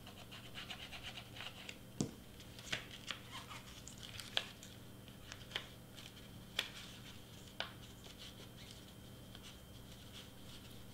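Paper wrapper being handled, pressed and folded by hand: soft rustles with a scatter of light clicks and taps, over a faint steady hum.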